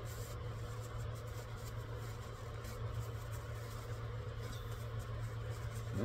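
Faint scratchy rubbing of a paper napkin wiping the clear film of a resin 3D printer's vat, over a steady low hum.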